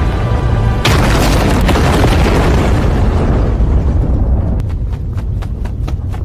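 Anime sound effect of a large bomb explosion: a sudden blast about a second in, then a long deep rumble that slowly fades. Near the end comes a quick run of short sharp cracks, about four a second.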